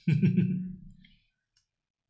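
A person's voice: a brief drawn-out vocal sound without clear words for about a second, fading away, then the sound cuts to silence.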